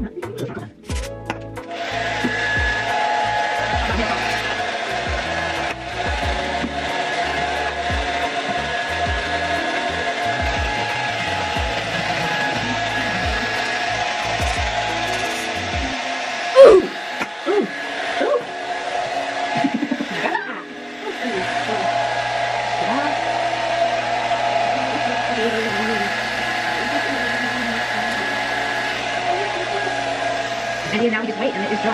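Hand-held hair dryer running steadily with a motor whine, switching on about two seconds in and dipping briefly twice. There is a single sharp knock about sixteen seconds in.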